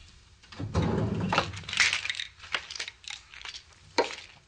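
A desk drawer being searched: small objects clatter and rattle for a second and a half, followed by several light clicks.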